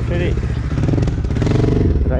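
Hanway Scrambler 250's single-cylinder, air-cooled four-stroke engine running while the motorcycle is ridden.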